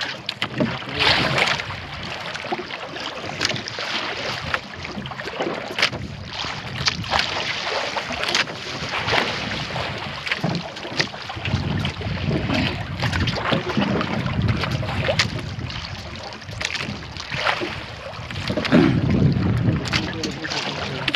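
Wind buffeting the microphone, with heavier low rumbling gusts about halfway through and near the end, over sea water slapping irregularly against the hull of a small outrigger fishing boat.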